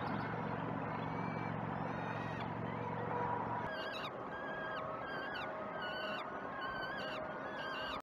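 A steady low rumble that cuts off a little before halfway, then a bird calling over and over, about two calls a second, each call dropping and then holding its pitch.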